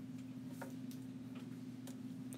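A few faint, light taps of a stylus on an iPad's glass screen as a dot is marked, over a steady low hum.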